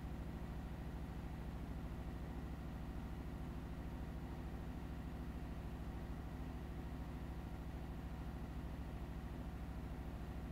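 Titan industrial sewing machine motor giving a low, steady hum that does not change.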